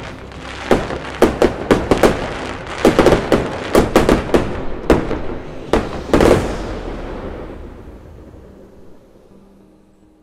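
Aerial fireworks bursting: an irregular run of about fifteen sharp bangs over some six seconds, the loudest about six seconds in. A long rumbling echo follows and fades out.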